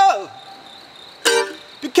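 A man's held sung note dies away. After a short gap a single bright mandolin strum rings out about a second and a quarter in, and he starts singing again near the end. A faint, steady, high insect drone runs underneath.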